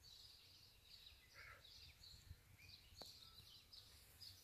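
Near silence with faint, scattered bird chirps in the background and a single faint click about three seconds in.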